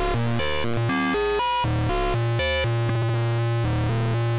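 VCV Rack software modular synthesizer playing a sequencer-driven pattern of short pitched notes, about four a second, each with a different pitch and tone, over a steady low drone. The oscillator is being modulated, which gives the notes their changing timbre.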